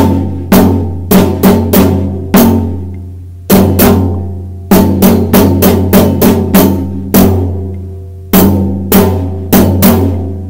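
Marching snare drum, marching bass drum and a pair of crash cymbals struck together in unison, playing a written rhythm of quarter and eighth notes with rests at 100 beats per minute. Each stroke is sharp and rings on after it.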